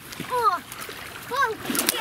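A thrown stone splashing into the water near the end, after two short, high calls from a child.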